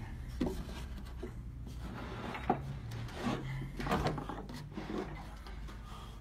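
Wooden blocks being handled and set down on a wooden workbench: light knocks and rubbing of wood on wood, with one sharper knock about two and a half seconds in.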